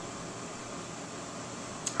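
Steady, even hiss of indoor room noise with no distinct events, and a single brief click near the end.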